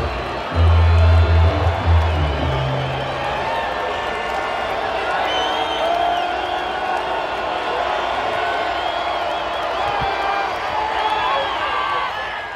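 Stadium crowd noise with music playing over the PA. A heavy bass line runs for the first few seconds, then gives way to crowd chatter with scattered whoops and whistles.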